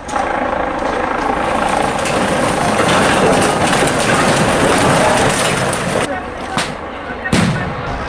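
Loud, dense sound of a riot-police eviction: a jumble of voices and vehicle noise. Near the end, about six to seven and a half seconds in, it is broken by a few sudden jolts.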